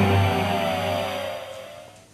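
The last chord of a TV show's dramatic theme music ringing out and fading away, with a falling sweep in pitch as it dies down.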